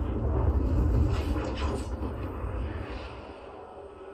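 DTS-HD Master Audio surround demo soundtrack: a deep rumble with a few whooshing sweeps about a second in, dying away toward the end.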